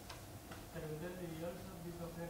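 A sharp click, then a man's voice holding a low, slightly wavering hesitation sound that begins less than a second in and lasts well over a second.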